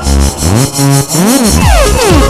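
Live electronic music at a club show, at a breakdown: the bass drum drops out for about a second while synthesizer tones sweep up and down in pitch, and the beat comes back near the end.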